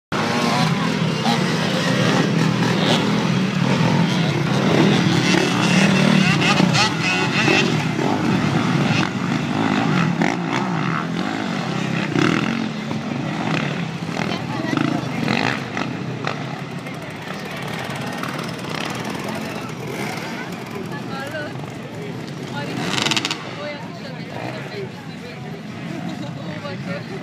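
Enduro dirt bike engines running and revving on an off-road course, loudest over the first several seconds and fading later, with voices talking over them.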